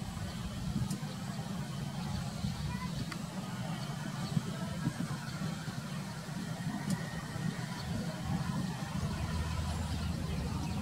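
A steady low outdoor rumble, with faint indistinct voices and a few light clicks.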